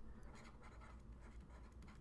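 Faint scratching of a pen writing, stroke by stroke.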